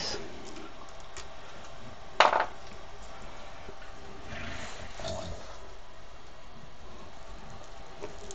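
Quiet handling sounds as a screw is driven back into a 3D printer's toolhead with an Allen wrench, over steady room noise. One brief, sharp, high sound stands out about two seconds in.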